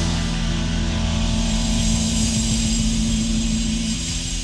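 Live rock band with twin electric guitars holding a long sustained chord over a high wash, steady in pitch until it breaks off at the very end.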